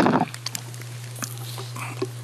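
Rustling and knocking of a man moving and getting up from his seat in front of a video-link microphone, loudest at the very start, then a few faint clicks over a steady low hum.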